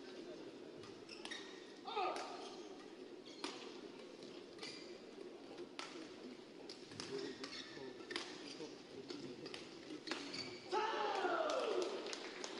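Badminton doubles rally in a hall: sharp racket-on-shuttlecock hits about once a second, with court shoe squeaks. Near the end, as the rally ends, several louder squeals.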